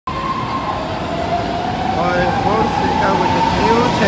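BART train pulling into the platform, a high whine that slowly drops in pitch as it slows, over the rumble of the cars on the rails. Voices come in about halfway through.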